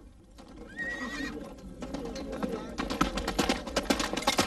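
A horse whinnies briefly about a second in, then a galloping horse's hoofbeats come in and grow louder through the second half.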